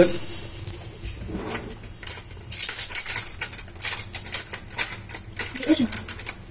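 A small metal spoon scraping and tapping against a fine wire-mesh strainer, rubbing lumpy cocoa powder through it into a saucepan. From about two seconds in it makes a quick, irregular run of scratchy clicks.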